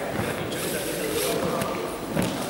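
Several people talking at once in an echoing sports hall, with rustling and a few knocks from foam gym mats being lowered and moved.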